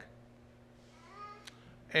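A man's speech trails off into a pause. About a second in there is a faint, brief, high-pitched voice-like sound, with a small click just after it. The man's voice starts again near the end.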